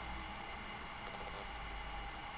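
Faint steady hiss of room tone with no distinct clicks or knocks.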